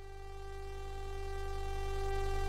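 A sustained electronic synthesizer chord with a low bass tone, fading in and growing steadily louder as the song's intro.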